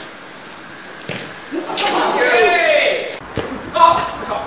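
Players shouting on an indoor futsal court: a sharp knock of the ball being kicked about a second in, then a long shouted call whose pitch glides up and down, and a second short call near the end.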